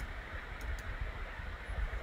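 Low, fluttering rumble and steady hiss from an open microphone on a video call, with a few faint clicks.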